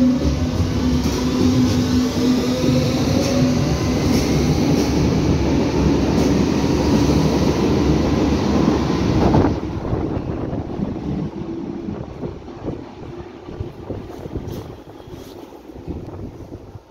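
Berlin U-Bahn subway train pulling out of an underground station: its traction drive whines, rising in pitch as it accelerates, over the rumble of wheels on rail. About nine and a half seconds in the sound drops sharply, and the rumble fades as the train runs into the tunnel.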